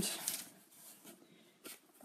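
Faint rustling handling noise, with a single light click about a second and a half in, in a quiet small room.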